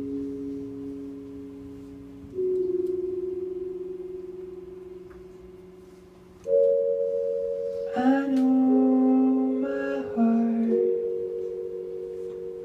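Slow keyboard chords with a soft, bell-like tone, each struck and left to ring and fade, with a new chord about two and a half seconds in and another about six and a half seconds in. From about eight seconds a wordless vocal line sings long held notes over them.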